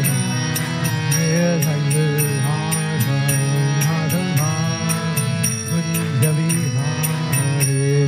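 Devotional mantra chanted by a man's voice over a harmonium's steady reed chords, with small hand cymbals striking an even beat at about three strokes a second.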